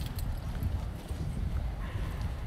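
Low, uneven thudding and rumble from a walker's steps carried through a handheld camera's microphone, with a sharp click right at the start.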